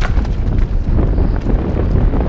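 Wind buffeting the microphone of a helmet-mounted camera on a mountain bike descending a dirt trail at speed, a loud steady low rumble. Short clicks and rattles from the bike and tyres over the rough ground cut through it, a sharp one at the start.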